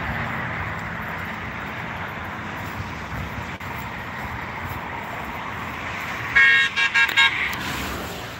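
Traffic going by on a highway, a steady road noise, then about six seconds in a passing car's horn sounds in a quick series of short, high beeps.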